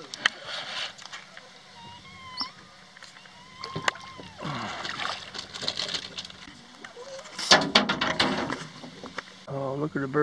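Clicks and knocks of gear being handled in a small fishing boat, with a few thin, high bird calls that rise and fall two to four seconds in, and patches of muffled voice.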